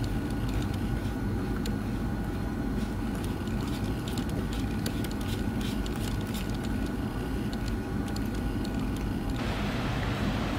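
Steady low hum of room ventilation with a few thin steady tones, over which faint light clicks come from plastic parts being handled as a cable connector is screwed onto a small antenna unit.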